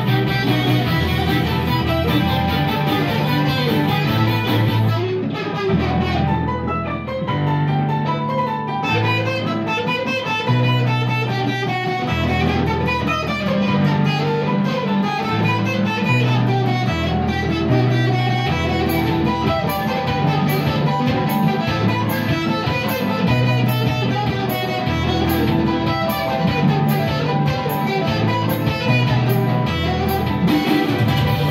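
Electric guitar played through an amp over a sequenced backing track with sustained bass notes that change every second or two. A high ticking beat joins in about two-thirds of the way through.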